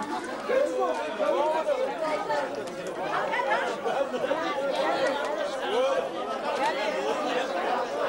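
Crowd chatter: many men's voices talking over one another at once, with no single voice standing out.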